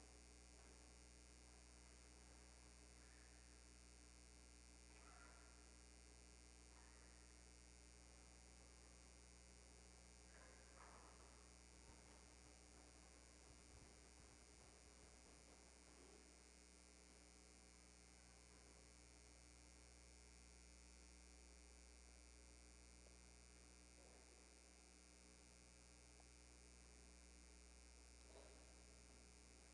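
Near silence: room tone with a steady low electrical hum and a few faint, brief sounds.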